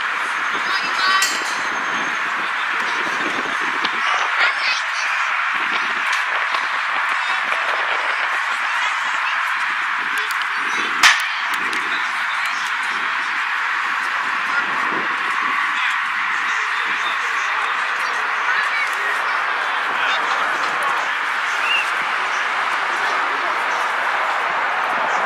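Steady open-air noise on a sports field with faint, indistinct voices of players in the distance, and one sharp crack about eleven seconds in.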